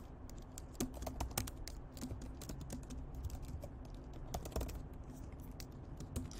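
Typing on a computer keyboard: a quick, uneven run of key clicks with short pauses.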